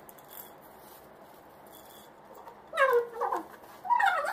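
A cat meowing: one drawn-out call, falling in pitch, a little under three seconds in.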